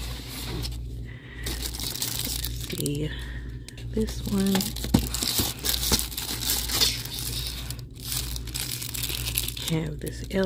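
Clear plastic shrink-wrap crinkling and rustling as wrapped canvas wall-art boards are handled, slid and flipped through on a store shelf.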